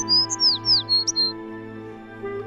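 A bird chirping: a quick run of high chirps, several sliding down in pitch, that stops about a second and a half in, over steady, sustained background music.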